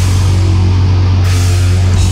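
Live heavy metal band playing loud: distorted guitars and bass holding a low note over fast, rapid-fire kick drumming and cymbals.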